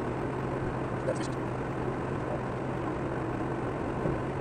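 Steady road and engine noise heard inside a car cruising at about 90 km/h, with tyres running on a wet road surface and a constant low drone.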